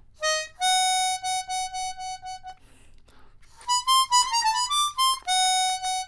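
Hohner chromatic harmonica playing a melodic phrase. It opens with a short note and then a long note sounded several times in a row. After a brief pause come a quick run of notes and another long, repeated note.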